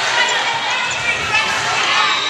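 A volleyball being struck in a rally, a few sharp slaps amid the steady chatter and shouts of spectators and players.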